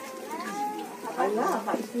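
Indistinct voices talking, louder in the second half.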